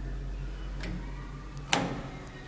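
Landing call button of an old Teev traction elevator clicking as it is pressed: a faint click, then a sharp one near the end that registers the call, its lamp lighting red. A steady low hum runs underneath.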